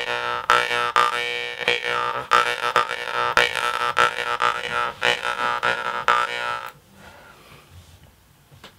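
Mouth harp (jaw harp) being played: the steel reed is plucked rhythmically by finger while the frame is pressed against the teeth, giving a buzzing drone whose overtones swoop up and down as the mouth changes shape. The playing stops about a second before the end.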